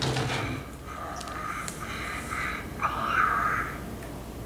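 Hatchimal toy making soft electronic cooing and chirping calls from inside its unhatched plastic egg: a few short calls, the last one rising and falling.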